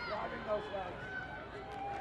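Players' voices shouting short calls on a rugby pitch as a ruck forms, over steady outdoor ground noise, with one louder call about half a second in.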